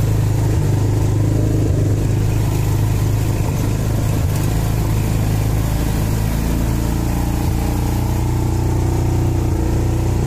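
Side-by-side off-road vehicle's engine running steadily as it drives across snow, heard from inside its open cab. Its pitch shifts slightly about two-thirds of the way through.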